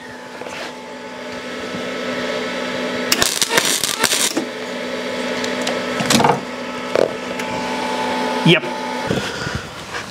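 MIG welder running at a high setting off a portable lithium battery power station: a steady electrical hum with bursts of arc crackle, cutting off suddenly about nine seconds in as the battery's overload protection trips.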